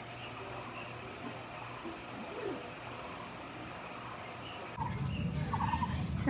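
Quiet outdoor ambience with faint, distant bird calls over a steady background. About five seconds in, the background abruptly grows louder and fuller.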